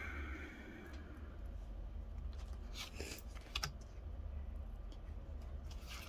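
Pokémon trading cards being handled and slid past one another by hand, a few soft clicks and rustles of card stock, over a steady low hum.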